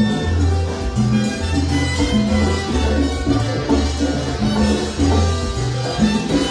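A live salsa band playing, with keyboards and a prominent bass line moving in a steady rhythm.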